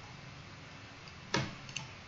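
Computer mouse clicking: one sharp click about one and a half seconds in, then two faint ticks, over low hiss.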